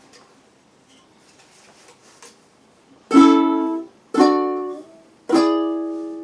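Carbon-fibre composite concert ukulele on polycarbonate strings: three strummed chords about a second apart, starting about halfway in. The first two are cut short and the last is left ringing.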